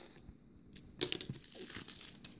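Plastic shrink wrap being torn and pulled off a cardboard phone box, crinkling and crackling, starting about a second in.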